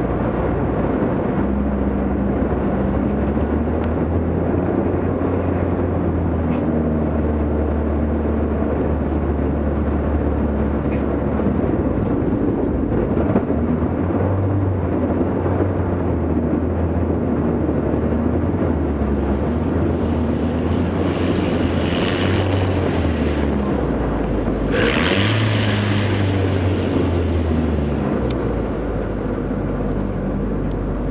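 A light aircraft's engine and propeller running in a steady drone, its pitch stepping up and down as power is changed. Two brief rushes of noise come about three-quarters of the way through.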